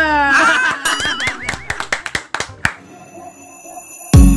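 Edited-in comic sound effect: a wobbling, pitched laugh-like sound, then a run of sharp clicks or claps. After that it drops to a few faint, steady high tones as an intro music track begins.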